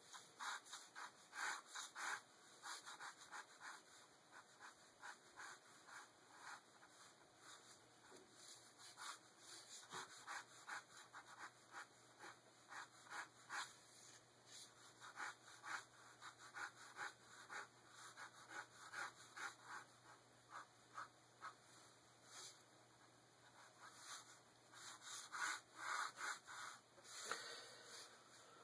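Ballpoint pen sketching on paper: faint, scratchy strokes as light lines are swept across the sheet, in runs of quick strokes with quieter gaps between them.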